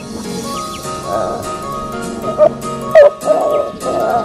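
Background music with a Chesapeake Bay retriever barking and yelping over it. The loudest are two short, sharp yelps a little after two and three seconds in, the second falling in pitch.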